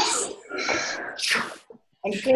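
Deep breaths drawn in and blown out hard close to a video-call microphone, heard as about three noisy, breathy rushes.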